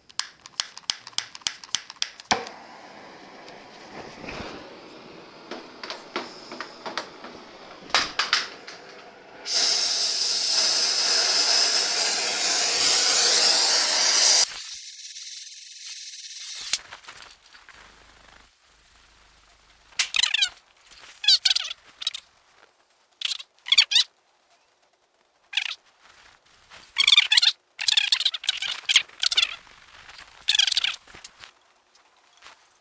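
Gas welding torch hissing steadily as its flame heats a small spot on a steel torque tube to straighten it, loud for about five seconds near the middle, then quieter. It is preceded by a quick run of clicks and followed by short scratchy bursts of a rag being rubbed on the tube.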